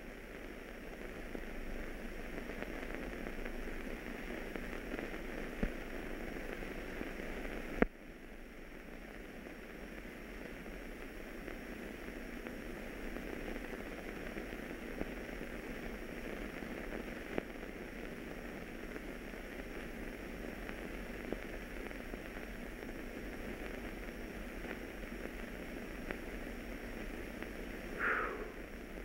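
Steady hiss and faint crackle of an old optical film soundtrack, with no dialogue or effects. There is a sharp click about eight seconds in, after which the hiss is slightly quieter, like a splice in the print.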